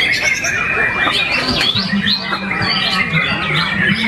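Caged white-rumped shamas (murai batu) singing over one another: a dense, continuous tangle of whistles, chirps and rapid trills.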